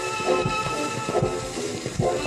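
Old shellac gramophone record of a jazz orchestra playing a slow blues: held horn chords over a steady beat about twice a second, with faint record surface hiss.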